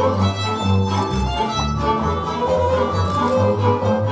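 Hungarian folk dance music played on fiddle with bowed strings and a low bass line that moves from note to note.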